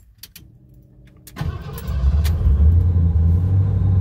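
1988 Ford Bronco's 5.8-litre V8 started with the key: a click or two, then the engine fires about a second and a half in and settles into a steady idle. It starts on the first try with its newly replaced starter motor and solenoid.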